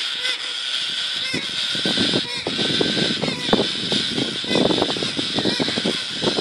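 A small flock of galahs (rose-breasted cockatoos) squawking. The calls come thick and fast and grow louder from about a second and a half in.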